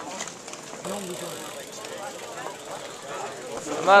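Background chatter of several people's voices, with a louder voice near the end.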